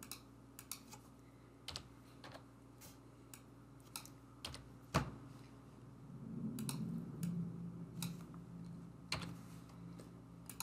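Computer keyboard keystrokes, scattered and unhurried, as a short name is typed, with one sharper keystroke about halfway through.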